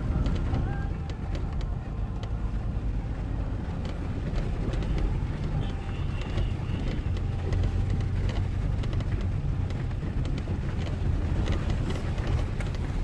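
Cabin sound of an off-road tour vehicle driving over a rough rocky dirt track: a steady low engine and road rumble with frequent small rattles and knocks from the jolting ride.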